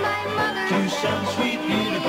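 Banjo, piano and double bass playing an up-tempo tune together.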